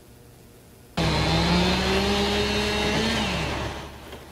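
Chainsaw running at high speed through a downed tree trunk. It starts suddenly about a second in, its pitch climbs slowly, then drops off near the end.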